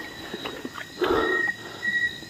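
Night insects keep up a thin, high, on-and-off trill, and a short breathy rustle comes about a second in.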